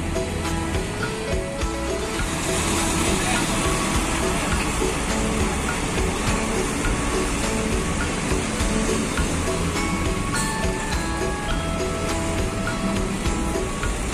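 Background music with a stepping melody, over the steady noise of bus engines and traffic.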